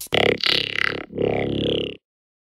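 Closing sound of an electronic dance remix: two drawn-out, low, distorted pitched sounds, the second starting about a second in, then the track cuts off abruptly into silence.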